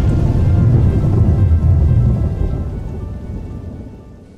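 Rumbling thunder-and-rain sound effect under faint music, fading away over the last two seconds.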